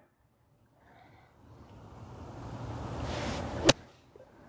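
A golf ball struck by a 60-degree wedge: one sharp, crisp click of the clubface on the ball near the end. Before it comes a rush of noise that builds for about two seconds.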